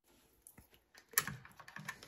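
Near silence for about the first second, then a few light plastic clicks and taps as the plastic battery-retaining bracket of an ADT Command security panel is handled against the opened panel housing.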